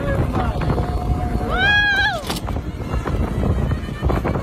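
A person's whooping shout about halfway through, rising, held briefly and then falling in pitch, over a steady low rumble of the moving rickshaw ride.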